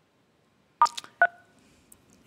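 Two short touch-tone keypad beeps over a caller's phone line, star then three, about half a second apart. This is the star-three key code that callers are told to use on the conference line.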